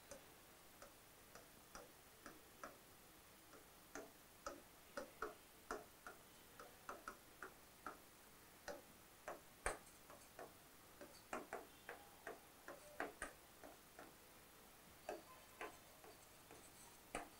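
Faint, irregular clicks and taps of a pen tip against an interactive whiteboard screen as words are handwritten on it. The taps are sparse at first and come thicker from a few seconds in.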